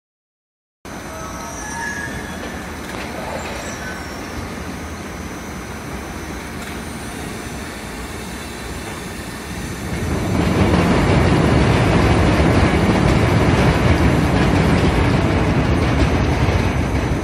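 Gypsum board production line machinery running: a steady mechanical rumble of roller conveyors and moving boards. It starts abruptly about a second in and gets clearly louder about ten seconds in.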